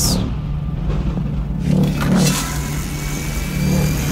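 Low, steady rumbling drone of trailer sound design, with a swelling whoosh about two seconds in and faint high tones after it.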